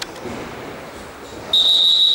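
Referee's whistle blown in one long, steady, high-pitched blast starting about a second and a half in, signalling the futsal kick-off, with reverberation from the sports hall.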